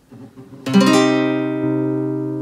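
A nylon-string classical guitar strums a C minor barre chord once from the fifth string, about two-thirds of a second in. The chord is then left ringing and slowly fades.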